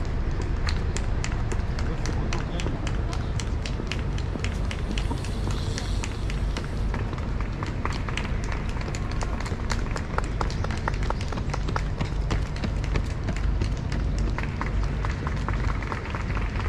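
Street-side race ambience: indistinct voices of onlookers over a steady low rumble, with a dense, irregular stream of sharp clicks and taps.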